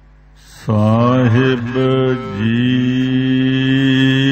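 A man's voice begins chanting Gurbani a little under a second in, in long, drawn-out notes that slide and waver in pitch: the opening of the Sikh Hukamnama recitation.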